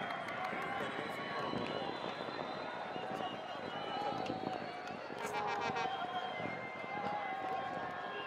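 Many overlapping voices shouting and chanting at once: a stadium crowd reacting to a goal. A brief high, fast rattling trill cuts through about five seconds in.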